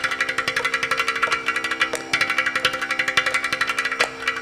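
Ghatam (South Indian clay pot drum) played in fast, dense strokes over a steady tanpura drone.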